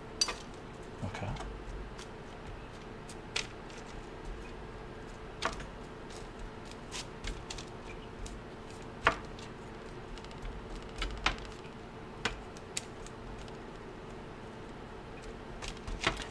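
Raw potato sticks being laid out by hand on a parchment-lined metal baking tray: irregular light clicks and taps every second or two as the pieces are set down and nudged apart. A faint steady hum runs underneath.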